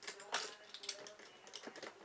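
Several light clicks and taps of small objects being handled, fairly quiet.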